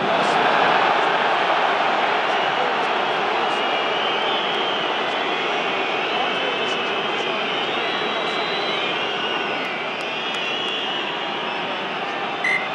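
Large stadium crowd roaring as a try is grounded: the roar swells at once and holds steady, with shrill wavering whistles heard over it from about four seconds in.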